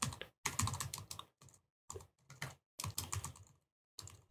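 Computer keyboard typing in short bursts of keystrokes with brief pauses between them.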